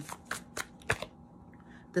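Tarot cards being shuffled by hand, about four short sharp card snaps in the first second.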